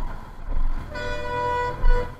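A vehicle horn sounds once, held for about a second, starting about a second in, over low street-traffic rumble. A low thump follows near the end.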